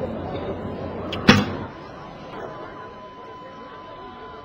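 Recurve bow shot: the bowstring snaps once, sharply, as the arrow is loosed just over a second in, with a faint click just before the release.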